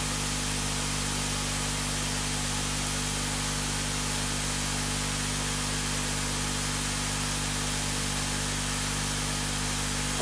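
Steady, even hiss with a low hum underneath, unchanging throughout: the recording's background noise.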